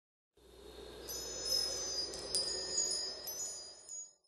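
Intro sting of high, ringing chime tones over a soft low swell. The tones are struck afresh a few times, fading in near the start and fading away at the end.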